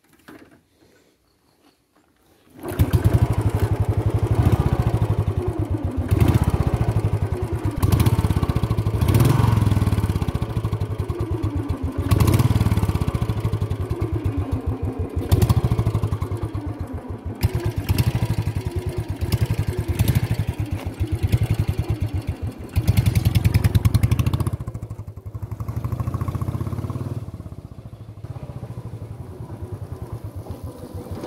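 Royal Enfield Standard 350 single-cylinder engine, fitted with a manual decompressor, starting abruptly about two and a half seconds in and then running with its even thump, the revs rising and falling several times. It drops lower from about 25 seconds in as the bike rides.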